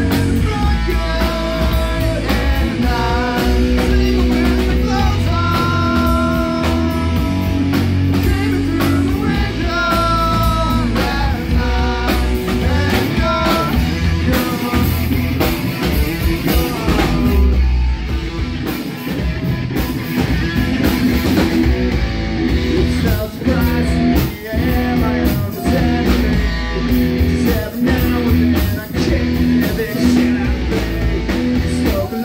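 Live rock band playing loudly through a PA: electric guitar, electric bass and drum kit, with held melodic notes over the band in the first half and harder drumming with a few short breaks in the second half.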